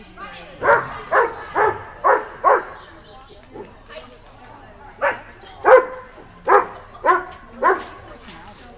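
A dog barking in two runs of about five barks each, roughly two a second: the first starts about half a second in, the second about five seconds in.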